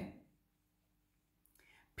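Near silence: room tone with a faint low hum, and a faint breath just before speech resumes near the end.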